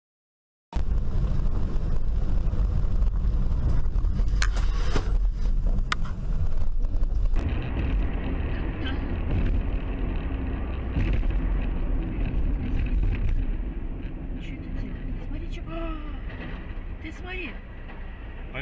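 Dashcam audio of driving on a highway. Heavy, low road and engine rumble inside a truck cab, with a couple of sharp knocks, until an abrupt cut about seven seconds in. Then lighter, steady road noise from a car, with a man's short exclamations near the end.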